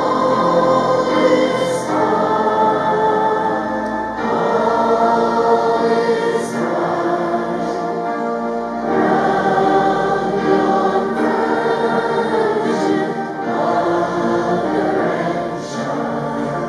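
A congregation singing a hymn together, many voices in slow phrases of a few seconds each.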